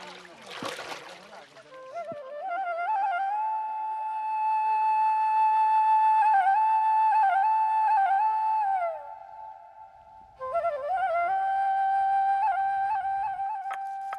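Background music: a solo flute plays a slow melody of long held notes with small ornamental turns, in two phrases with a pause of about a second between them. Water splashing fades out in the first second or two.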